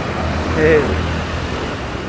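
Steady low rumble of motor traffic on a city street, with a short spoken 'eh' about half a second in.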